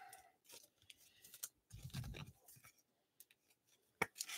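Faint, scattered rustling and clicking of trading cards and plastic card sleeves being handled.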